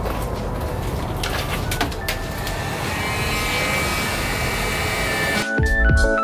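A steady hiss of outdoor noise with a few sharp knocks. About five and a half seconds in, it cuts abruptly to background music with piano and a drum beat.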